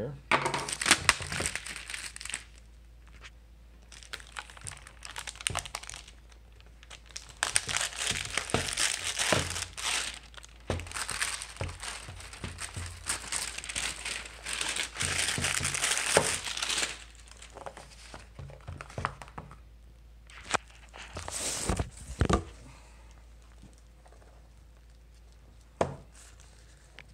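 Plastic shrink wrap being cut and pulled off a cardboard knife box, crinkling and tearing in several bursts with a few sharp clicks. The longest stretch of crinkling falls in the middle.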